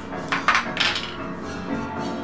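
Bare piano strings on a stripped-down piano frame and soundboard, struck a few times in the first second with sharp metallic hits, over many tones that keep ringing.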